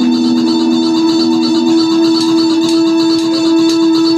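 Live band's amplified music holding one loud, steady sustained note. A lower note beneath it drops out about half a second in.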